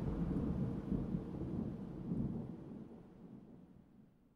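Low, uneven rumble with no tune, the closing tail of a dark ambient track, fading out to near silence near the end.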